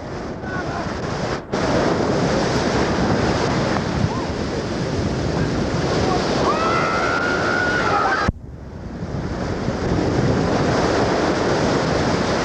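Ocean surf breaking and washing in around waders, with wind buffeting the microphone. The sound cuts out abruptly for a moment twice, once soon after the start and again about two-thirds of the way through.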